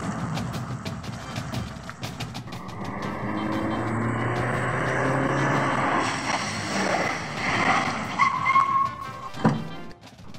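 A car driving up under background music, its engine sound rising through the middle, with a single thump near the end.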